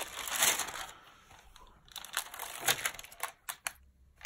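Paper rustling as stamp album pages and a thin translucent interleaving sheet are turned by hand. A louder rustle comes in the first second, followed by a few quieter crackles.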